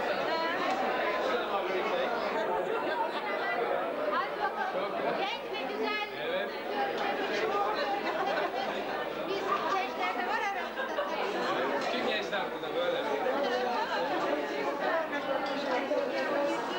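Chatter of many guests talking at once at a standing cocktail reception, a steady babble of overlapping voices.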